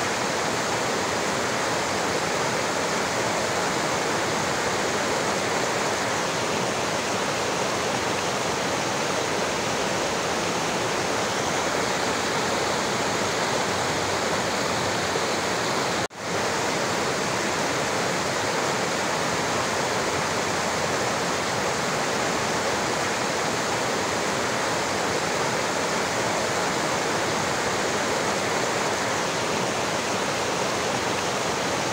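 Mountain stream rushing and splashing over a cascade of boulders, a steady continuous water noise. It cuts out for an instant about halfway through.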